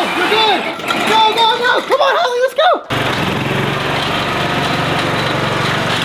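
John Deere riding lawn tractor's engine running steadily at an even speed as it pulls a small cart. It starts abruptly about halfway through, after children's voices.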